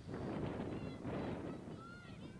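Shouting voices carried across the field, lasting about a second and a half before falling back to the ambient noise of the pitch.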